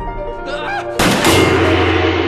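Film soundtrack: a sharp, loud hit about a second in that leaves a long ringing chord, with a short wavering, voice-like sound just before it.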